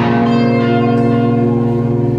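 Live rock band music at concert volume: a chord struck right at the start rings out and holds steady, with a bell-like sustained tone.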